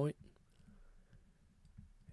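Faint clicks and taps of a stylus writing on a drawing tablet, in a quiet room, after a spoken word ends at the very start.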